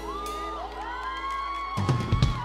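A band's final chord ringing out over a held bass, with high-pitched screams and whoops from a crowd of fans. The bass cuts off shortly before the end, followed by a couple of loud thumps.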